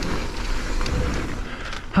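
Mountain bike tyres rolling over a dry, dusty dirt trail through banked turns, heard as a steady rushing noise with a low rumble.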